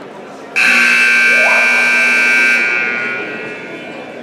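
Electronic gym scoreboard horn going off as its countdown timer runs out: one loud, steady buzz that starts suddenly about half a second in, holds for about two seconds, then fades away.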